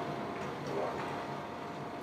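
Quiet room tone: a faint, even hiss with a thin steady hum through the lecturer's microphone pause, with no distinct sound event.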